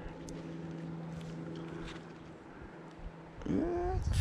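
A man's wordless vocal sounds: a faint steady hum for the first two seconds, then a louder hum that rises in pitch near the end.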